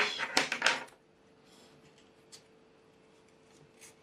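A man's voice finishing a short phrase, then near silence: room tone with a faint steady hum and a couple of small, faint clicks.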